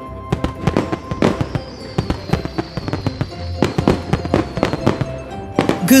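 Cartoon fireworks sound effects, a run of bangs and crackling pops, over background music, with a long thin whistle falling slowly in pitch through the middle.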